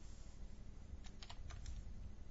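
Computer keyboard typing: a quick run of about six keystrokes starting about a second in, as a new password is typed into a form.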